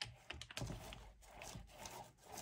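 Small foam paint roller rolled back and forth over a canvas through a wet coat of liquid: a run of soft, sticky rubbing strokes with small clicks.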